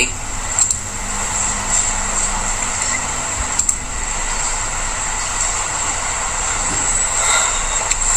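Steady background hiss and room noise, with a couple of faint clicks.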